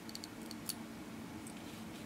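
A few faint clicks and snips of small fly-tying scissors trimming partridge feather fibres held in a bulldog clip, mostly in the first second, over low room noise.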